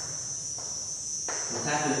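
Insects singing in a steady, unbroken high-pitched drone, with a man's voice starting about one and a half seconds in.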